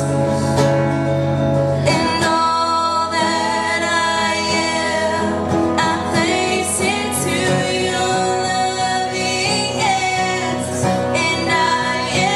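A young woman singing live into a microphone, accompanied by a guitar.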